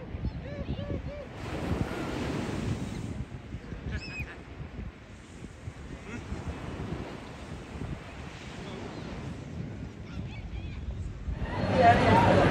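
Small sea waves washing onto a sandy beach: a steady hiss of surf that swells twice, briefly in the first seconds and for longer in the middle.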